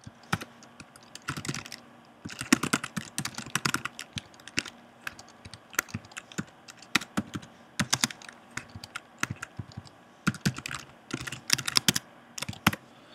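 Typing on a computer keyboard: irregular runs of quick key clicks broken by short pauses.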